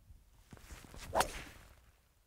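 A golf tee shot with a three wood: the swish of the club coming through, then the sharp crack of the clubface striking the ball a little over a second in.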